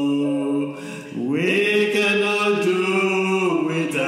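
Slow unaccompanied singing of a worship song: long held notes, with a short dip about a second in before the next note comes in.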